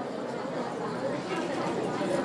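Low murmur of audience chatter, many voices talking softly in a hall.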